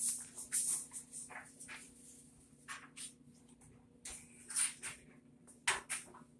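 Handling noise from a vintage bicycle being wheeled and turned around: a string of short rattles, scuffs and clicks at irregular intervals, over a faint steady low hum.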